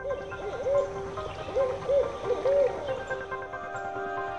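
Barred owl hooting: a short series of about six rising-and-falling hoots in the first three seconds, over background music.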